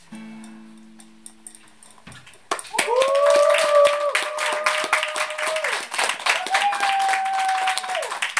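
Final chord of an acoustic guitar ringing out and fading, then, about two and a half seconds in, a small audience breaking into loud applause with long cheering shouts over the clapping.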